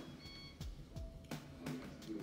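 Light clicks and taps of trading cards being flipped through and handled on a table, scattered irregularly, with a couple of faint brief tones.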